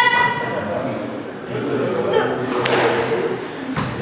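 Indistinct talking by people around a squash court, with a single sharp knock about two-thirds of the way through.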